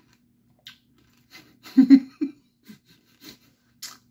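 Someone chewing a gummy Nerds Rope candy with the mouth close to the microphone: scattered wet smacks and clicks, and a louder cluster about two seconds in that includes a short voiced hum.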